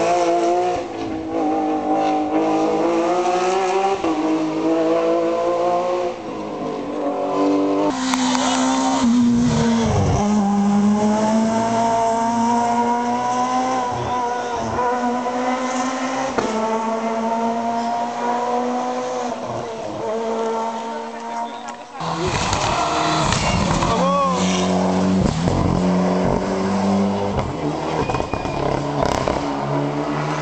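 Rally car engine accelerating hard up a mountain road. It rises in pitch again and again, each climb cut short by a gear change, as the car drives away up the hill.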